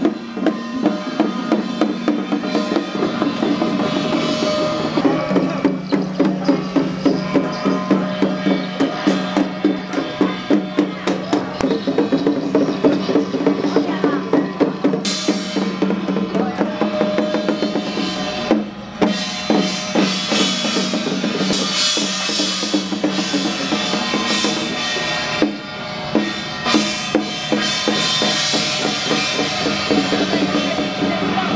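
Festival percussion: drums and other percussion beating a quick, steady rhythm without a break, with a sustained low ringing tone underneath.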